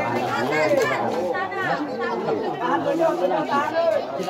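Several people talking over one another close to the microphone: spectators' chatter, with no single voice standing out.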